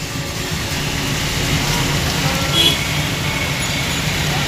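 Road traffic heard from inside a car: a steady engine and road noise, with a short honk of a vehicle horn about two and a half seconds in.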